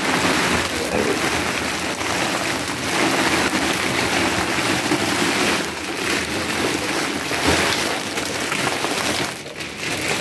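A large clear plastic bag crinkling while packaged snacks rustle and slide out of it onto a hard floor, a steady rustle with a brief louder clatter about seven and a half seconds in.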